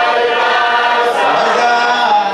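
A church choir singing a hymn unaccompanied, several voices together holding long notes and moving between them.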